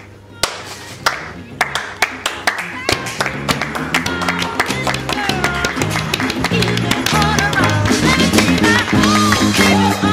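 Single person's hand claps, a string of sharp slaps, with instrumental music coming in about three seconds in and building in loudness, a bass line and melody under continuing percussive hits.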